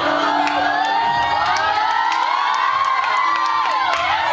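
A crowd of many high-pitched voices screaming and cheering together, their pitches rising and falling over one another.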